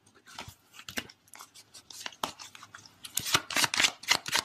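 Tarot cards being handled and shuffled: a run of soft clicks and snaps, sparse at first, then denser and louder about three seconds in.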